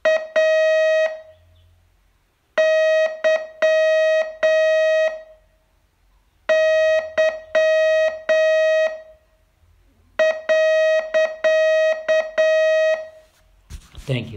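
Morse code sent as a buzzy mid-pitched beep, keyed on and off in short dots and longer dashes. It comes in four groups separated by pauses of about a second and a half.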